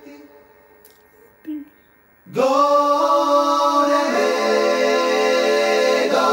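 Multitracked a cappella male voices, one singer layered many times, singing a Bulgarian folk song in close harmony. A held chord fades away, there is a short lull with a single brief low note, then about two seconds in the full chord comes in loudly with a swoop up from below. Around four seconds in the harmony shifts as lower voices join.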